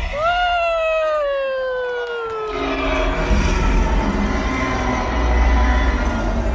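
Velociraptor call played over arena speakers: one long screech that rises briefly and then slides slowly down in pitch for about two and a half seconds. A low rumble follows and carries on to the end.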